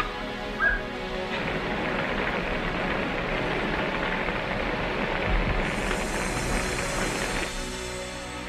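Dramatic film score music with sustained tones over the rushing noise of a large fire burning through a building, which swells from about a second in and drops away near the end. A brief high-pitched sound cuts through just under a second in.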